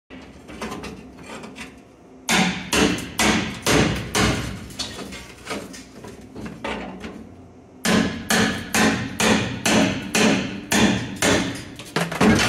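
Hammer blows on the rusted sheet-metal ash pan of a steam locomotive, struck upward from underneath. A few light taps give way to heavy blows about two a second, easing off for a couple of seconds in the middle before the heavy blows resume.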